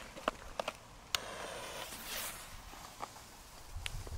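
A firecracker's fuse being lit: a sharp click about a second in, then about a second of hissing as the fuse catches, with light footsteps on concrete as the lighter moves away. No bang yet.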